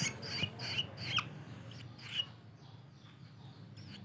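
Long-tailed shrike nestlings calling with short, high chirps: several in quick succession in the first second, one more about two seconds in, then only faint ones.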